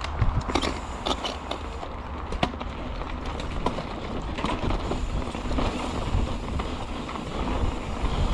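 Mountain bike rolling downhill over a dirt and gravel trail: steady tyre noise with many sharp clicks and rattles from the bike, over a low rumble.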